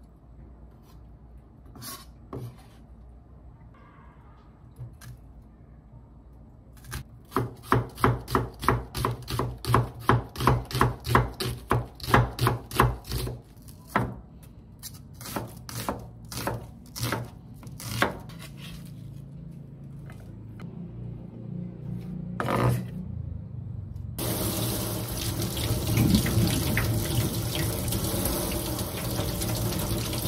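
Chef's knife chopping on a wooden cutting board: scattered cuts at first, then a quick steady run of slices through an onion, about three a second. Near the end a tap opens and water runs into a stainless steel sink as a carrot is rinsed by hand.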